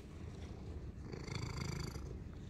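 Domestic cat purring quietly, a low steady rumble.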